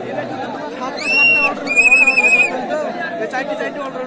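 Crowd chatter at a kabaddi match, with two blasts of a referee's whistle about a second in: a short steady blast, then a longer trilling one.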